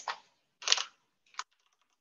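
Computer keyboard keystrokes during editing in a code editor: one sharp clack about two-thirds of a second in, a lighter one near the middle, then faint scattered taps.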